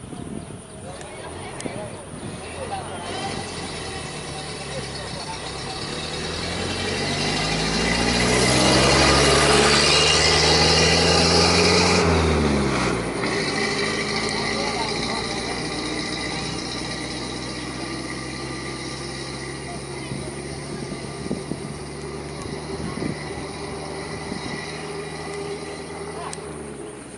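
A motor engine running, growing louder to a peak about halfway through, then dropping in pitch and fading to a steadier, quieter hum.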